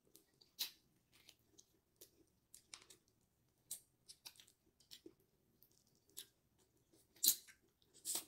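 A person biting and chewing a piece of food held in both hands, close to the microphone: a string of short, irregular clicks, the loudest about seven seconds in.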